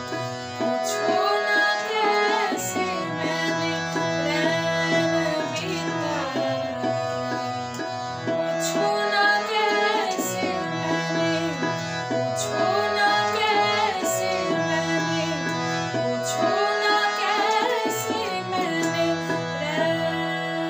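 A woman sings a Hindi film song in raga Ahir Bhairav, with a gliding, ornamented melody. She sings over recorded instrumental backing with held drone-like tones and a steady, repeating drum rhythm.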